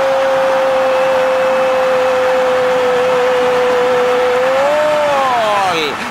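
A Spanish-language football commentator's long, held cry of 'gol' celebrating a goal. The voice stays on one steady note for several seconds, then rises and falls as the cry ends near the end.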